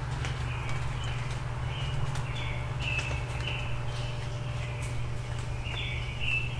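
A small songbird calling a string of short, repeated notes in a dawn chorus, over a steady low rumble, with scattered sharp ticks.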